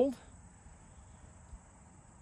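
Faint, steady, high-pitched insect trill, like crickets, in an otherwise quiet outdoor stillness, after a man's last word fades at the very start.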